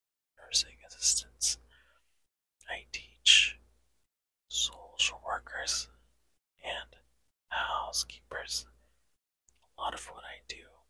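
A man whispering close to the microphone in short phrases, with sharp hissing sibilants and silent pauses between them.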